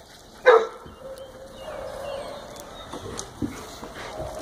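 A dog barks once, a single loud bark about half a second in, followed by quieter scattered sounds from the other dogs in the yard.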